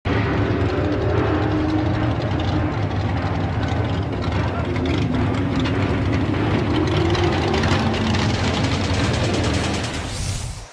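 LS-based V8 engine of an open-wheel dirt modified race car, running steadily at low revs, its pitch wavering slightly up and down.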